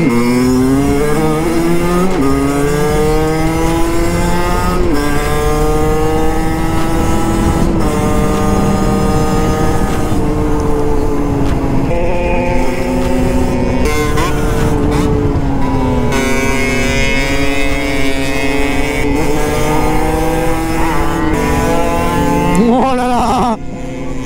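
Small two-stroke 50cc dirt bike engine, stock, heard from on the bike while riding. It revs up hard, the pitch dropping back at each gear change through the first half, then holds a steady high cruise, with wind rumble beneath.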